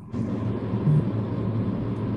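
Steady low hum under an even noisy hiss: background noise picked up on a live-stream call's audio, with no speech.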